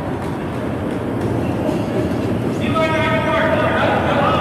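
Granite curling stone sliding down the ice with a steady low rumble. Partway through, a player shouts a long, drawn-out call.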